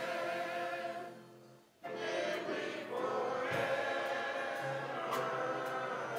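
Men's chorus singing a gospel hymn in held chords. The singing dies away to a short break just before two seconds in, then the voices come back in together.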